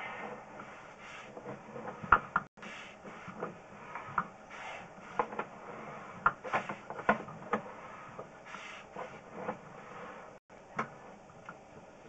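Sewer inspection camera's push cable being pulled back through the pipe: irregular clicks and knocks over a steady rubbing noise.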